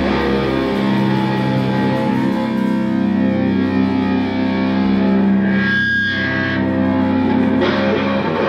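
Live rock band music: distorted electric guitars holding ringing chords through effects, with cymbal hits thinning out after the first few seconds.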